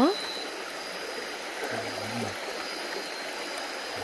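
Shallow stream water running steadily over rocks, a constant even rush.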